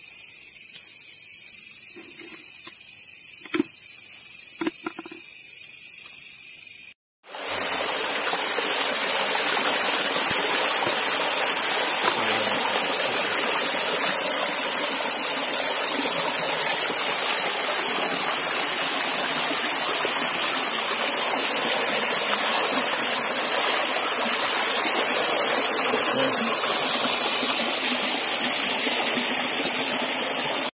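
Shallow creek water rushing and splashing steadily around a wader's feet, under a continuous high-pitched hiss. For the first several seconds only the high hiss and a few soft knocks are heard; the sound cuts out briefly about seven seconds in, and then the water noise fills the rest.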